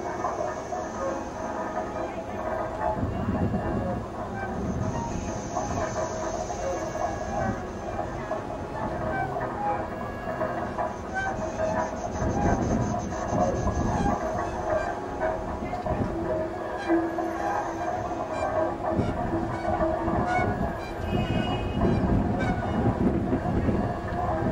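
Free-improvised experimental music from cello and saxophone: a dense, continuous texture of small clicks and low rumbling, with a held low tone for a second or two about two-thirds of the way through.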